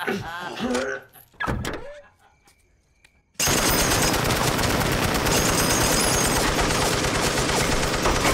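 Several men laughing, a short hush, then a belt-fed M60 machine gun opens fire about three and a half seconds in and keeps firing in one long, unbroken burst.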